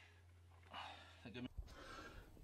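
Near silence: a man's faint breaths and a low steady hum that cuts off about three-quarters of the way through.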